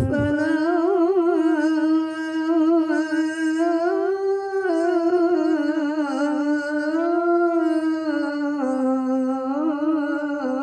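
A single man's voice chanting Arabic Islamic prayer in long held, wavering melismatic notes, rising and falling slowly in pitch without pause.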